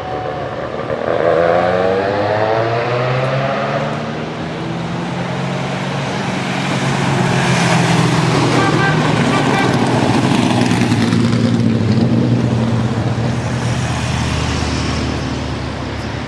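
Race car engine of a modified pickup truck climbing toward the corner, revs rising through several gears, then passing loudly about eight seconds in. Near the end the next race car's engine is heard approaching.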